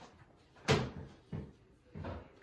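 A loud knock about two-thirds of a second in, then a fainter one about half a second later.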